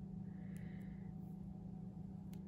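Quiet room tone: a steady low electrical hum with a few faint ticks.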